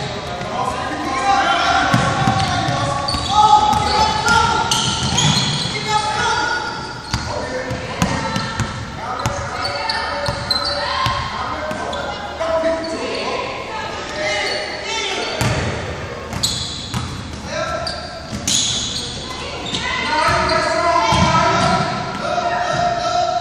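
A basketball being dribbled and bounced on a hardwood gym floor, with repeated sharp thuds, under steady shouting and calling voices of players, coaches and spectators, all echoing in a large gymnasium.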